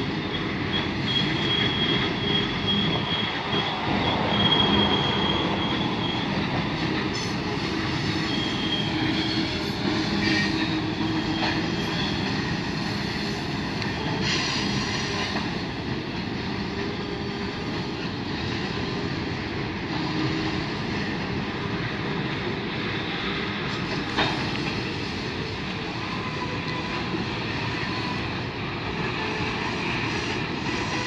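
A long Canadian Pacific freight train's cars rolling slowly past in a steady rumble, with high-pitched wheel squeal in the first half. There is a single sharp click late on.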